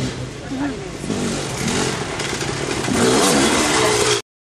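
Dirt bike engine revving on a steep climb, getting louder about three seconds in as the bike comes close, with spectators' voices over it.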